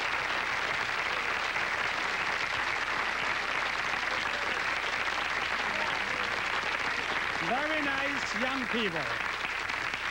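Studio audience applauding steadily, with a man's voice starting over the applause near the end.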